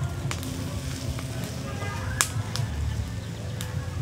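Charcoal embers crackling under skewered quail as they are basted and grilled, with a few sharp pops, the loudest about halfway through.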